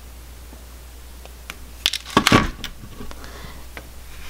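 Wire cutters snipping thin 24-gauge copper wire: a couple of sharp clicks just before two seconds in, followed at once by a louder, duller knock, with faint handling clicks around them.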